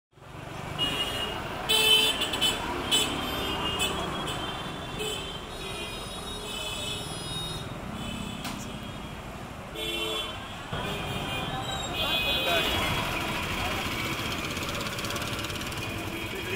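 Busy street traffic: vehicle horns honk many times in short blasts through the first half, and again about ten seconds in, over the steady noise of running engines and voices.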